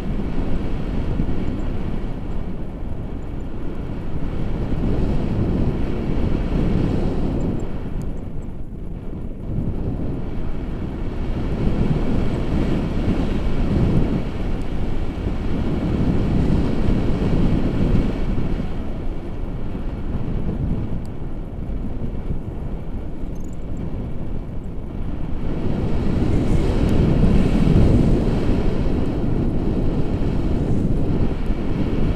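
Wind buffeting the microphone of a camera carried through the air on a tandem paraglider in flight: a low rumble that swells and eases, loudest near the end.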